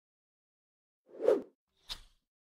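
Two short pop sound effects accompanying an animated logo intro: a louder, lower pop about a second in, then a brief, brighter click near the end, with silence between them.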